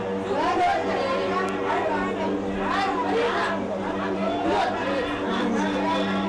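Several people talking at once, their voices overlapping, over a steady low hum.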